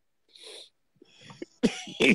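A person coughing: a short breath about half a second in, then a sharp cough near the end.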